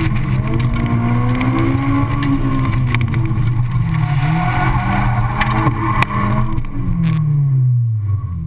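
Honda S2000's four-cylinder engine running hard through an autocross course, heard in the open cockpit, its pitch rising and falling with the throttle, over wind rushing past the open top. Near the end the rushing fades and the engine note falls steadily as the driver comes off the throttle.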